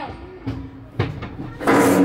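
A couple of knocks, about half a second and a second in, from a child moving inside a metal tube slide. Near the end a loud child's shout begins.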